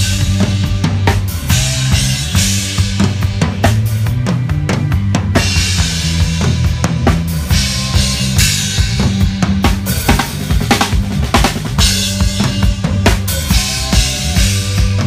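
Rock drum kit played live at close range, with kick drum, snare and cymbal hits throughout, over changing low bass notes from the band.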